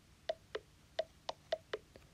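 iPad VoiceOver gesture feedback clicks: about six short, faint clicks at uneven intervals as a finger drags down from the top edge of the screen and back up again. Each click marks the finger crossing a stage of the iOS 12 edge gesture for Control Center.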